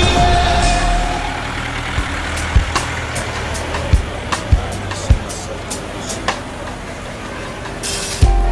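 Night street traffic: vehicles running and a bus passing, a steady rumble with scattered clicks and knocks, as a music track fades out in the first second.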